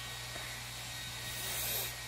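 Steady low electrical hum with a faint even hiss of room tone, and a brief soft hiss near the end.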